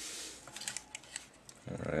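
A few light clicks of hard plastic model-kit parts being handled as the shield is pulled off the Gunpla's forearm.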